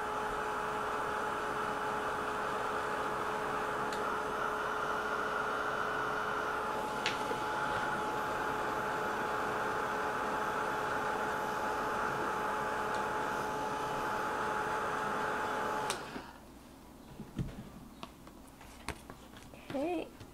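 Handheld craft heat tool running steadily with a fan whir and a held hum while it dries wet black gesso on a card, switched off abruptly near the end. A few faint handling sounds follow.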